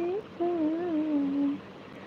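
A woman humming: a held note that rises at its end, then after a brief pause a wavering phrase that slides down and stops about one and a half seconds in.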